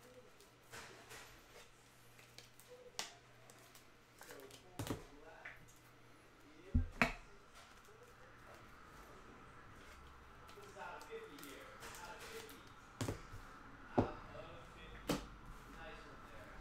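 Trading cards being handled on a table: scattered sharp taps and clicks as cards and packs are set down and squared up, the loudest about seven seconds in and again near the end.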